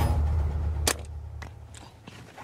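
A single sharp shot from a gas-powered dart rifle about a second in, firing a vaccine dart at a zebra, over a low rumble that fades out.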